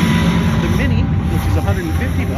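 Video slot machine in its bonus feature, as the jackpot wheel resolves. A low steady hum is heard under the busy noise of the casino floor, with voices in it.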